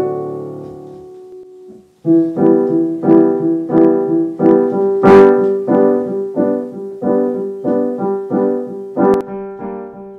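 Background piano music: a chord dies away over the first two seconds, then repeated chords are struck at a steady pace of about three a second.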